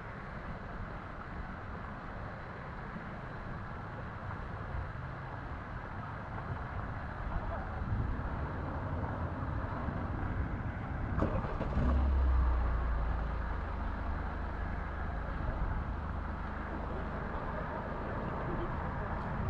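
Outdoor street ambience with a motor vehicle's low engine rumble swelling and loudest about twelve seconds in, over a steady background of distant voices. A single sharp click comes just before the rumble peaks.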